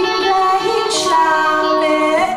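A woman singing long held notes over electric guitar accompaniment, live on stage.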